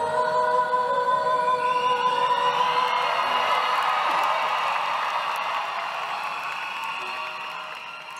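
The last held note of a live pop ballad, a female voice sustained over the band, then an audience cheering and applauding from about two seconds in, the noise slowly fading.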